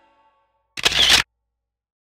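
A single camera shutter sound effect about a second in, short and sharp, lasting about half a second. The tail of background music fades out at the start.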